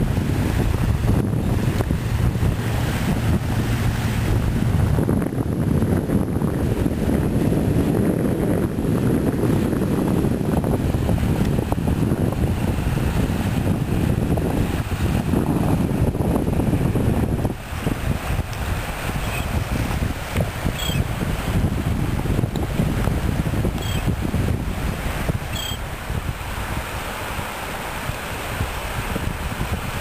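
Wind buffeting the microphone over small waves lapping on the shore. The wind eases a little just past halfway, and a few faint, short high chirps come in later.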